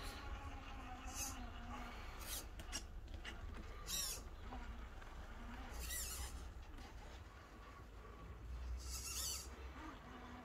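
Absima Sherpa RC crawler's small electric motor and gears whining faintly as it creeps along, with a few short high-pitched chirps scattered through.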